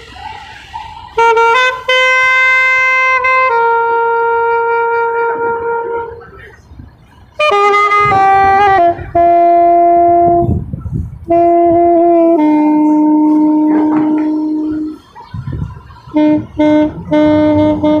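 A solo wind instrument, saxophone-like, playing a slow melody of long held notes with short breaks between phrases. A low rumble shows through in the breaks.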